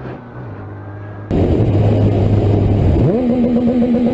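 Motorcycle engine running steadily from the rider's own bike, then after about a second the sound jumps much louder with wind rushing over the microphone. Near the end the engine note climbs sharply and holds high as the bike accelerates.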